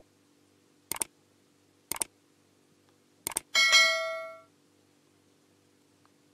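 Subscribe-button animation sound effect: three mouse-click sounds about a second apart, then a bell-like notification ding that rings and fades over about a second.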